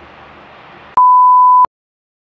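Faint room noise, then about a second in a single loud, steady electronic beep at one pitch, lasting well under a second and cutting off suddenly.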